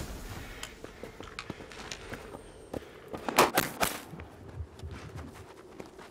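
Footsteps crunching on loose stones and gravel, irregular scattered crunches with a few louder ones together a little past the middle.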